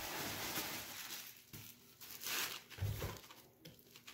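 Cardboard box and plastic-wrapped packages being handled: rustling and crinkling, with a couple of soft knocks about two and three seconds in.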